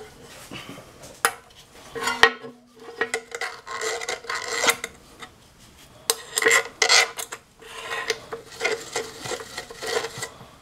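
Gloved fingers rubbing and scraping at an oil pump pickup's strainer screen and the metal around it in an engine oil pan, in irregular bursts with a few small clicks, over a faint steady hum.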